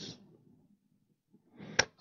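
A pause in a man's talk, mostly near silence. Near the end there is a soft rustle of noise and then one sharp click, just before speech resumes.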